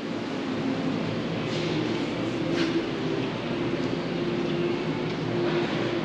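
Steady mechanical hum with a constant low drone, the running noise of a building's heating and ventilation system.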